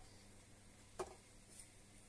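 Near silence: quiet room tone, with one faint short click about a second in.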